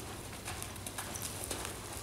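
A horse walking on soft dirt arena footing, its hoofbeats falling in an uneven walking rhythm together with a person's footsteps.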